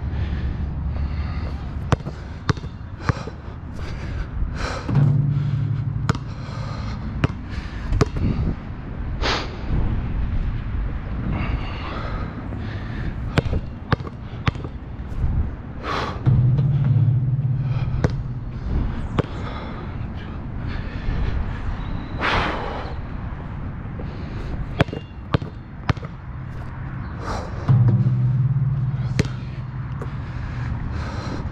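Basketball bouncing on an outdoor court and hitting the rim and backboard: sharp impacts at irregular intervals over a wind rumble on the microphone. A low hum swells and fades three times.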